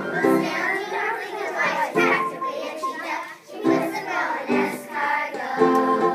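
A group of young children singing a song together over musical accompaniment.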